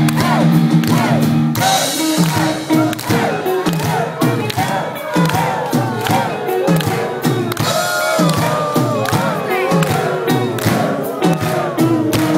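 Heavy metal band playing live: distorted electric guitars over a steady drum beat, with a crowd cheering along.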